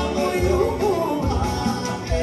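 Live Albanian wedding dance music: a clarinet playing a bending, ornamented melody over keyboard backing with a pulsing bass beat.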